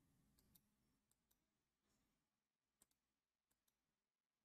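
Near silence, with a few very faint scattered clicks.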